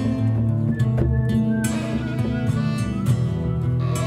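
Acoustic guitar strummed together with an upright piano, playing a live instrumental passage.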